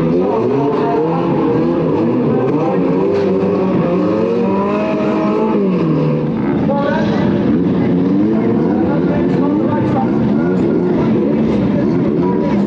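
Several banger-racing car engines running and revving together as the cars roll round the track, their pitches rising and falling over one another.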